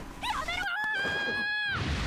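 A cartoon character's high-pitched, whimpering cry from the anime soundtrack. Its pitch wavers up and down at first, then holds steady for most of a second before trailing off near the end.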